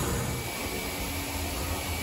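Car-wash vacuum running: a steady drone with a faint high whine, and a lower hum that comes in about a second in.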